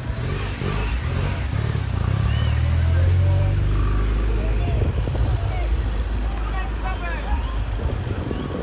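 A car engine running, its low sound building to its loudest about three seconds in and then holding steady, with scattered voices over it.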